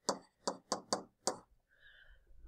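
Stylus tapping against a tablet screen while writing numbers by hand: five quick, sharp taps in the first second and a half.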